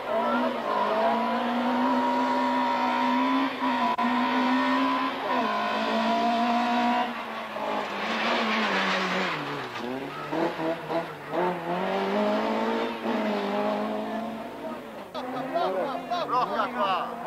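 A small hatchback race car's engine is held at high revs, then drops and climbs again through gear changes as it accelerates up the hillclimb course. About eight seconds in it passes close with a burst of tyre noise and a falling pitch, then revs up again.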